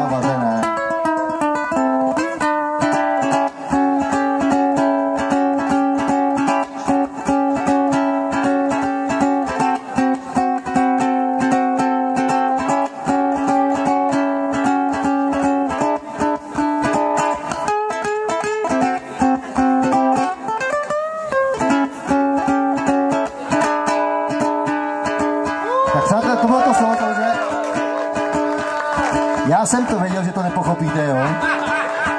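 Ukulele instrumental solo in a jazz style, played with fast, dense strumming and plucking that holds chords for long stretches. A voice joins near the end.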